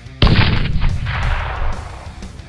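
Explosion sound effect: a single sudden loud blast about a quarter of a second in, rumbling away over the next second and a half, over background rock music.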